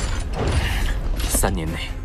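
Mechanical sound effect of armour parts moving, with creaks and clicks and a bright hiss about one and a half seconds in, over a low background rumble.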